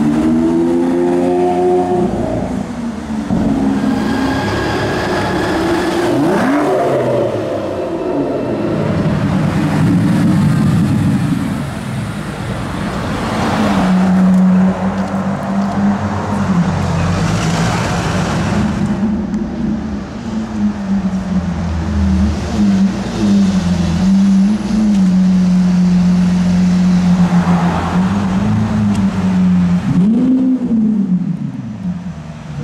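Supercar V12 engines revving and pulling away, with the engine pitch climbing and falling several times in the first half. A steady engine note holds through the second half.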